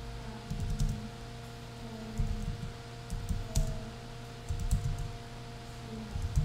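Typing on a computer keyboard: several short runs of keystrokes with pauses between them, over a faint steady hum.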